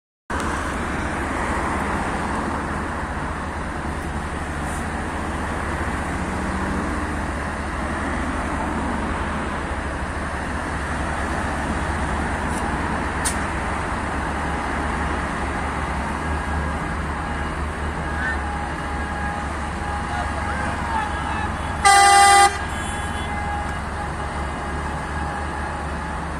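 Steady low rumble of tractor diesel engines and road traffic, with one loud vehicle horn blast of about half a second near the end.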